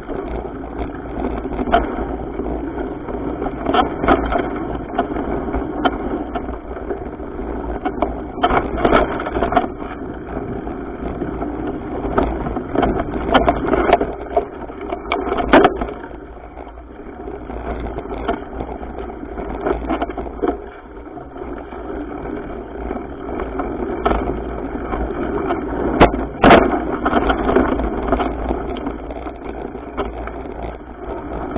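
Mountain bike ridden fast on dirt singletrack, heard from a bike-mounted camera: a steady rush of wind and tyre noise with a low rumble, broken by frequent rattles and sharp knocks as the bike hits bumps.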